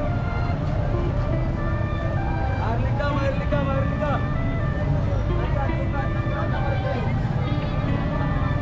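Busy street sounds: a steady low traffic rumble with people's voices and music playing through it.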